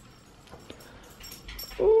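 Quiet room tone with a few faint clicks, then near the end a girl's drawn-out, sing-song "ooh" begins.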